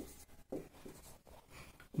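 Felt-tip marker writing on a whiteboard: a few faint, short strokes as a word is written.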